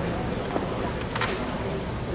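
Many people talking at once in small groups, a steady babble of overlapping conversation, with a sharp click about half a second in and a short rustle a little after one second.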